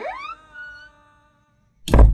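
The closing notes of a hip-hop track: stacked held tones sweep upward in pitch together and fade out within about a second. After a short silence comes a loud, deep hit near the end.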